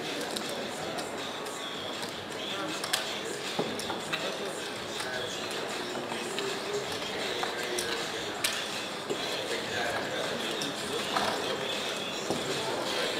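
Background chatter of voices at a casino table, with short sharp clicks of clay roulette chips being handled and stacked by the dealer now and then.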